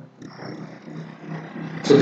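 A man's voice, low and faint, making a wordless sound between phrases.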